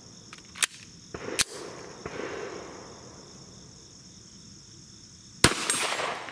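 Two sharp clicks as the Ruger American 9mm pistol is handled and readied. About five and a half seconds in comes a single loud 9mm pistol shot with a ringing tail.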